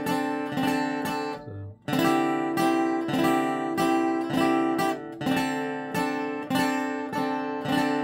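Seagull cutaway acoustic guitar strummed in a steady rhythm of chords, with a brief break about a second and a half in before the strumming picks up again.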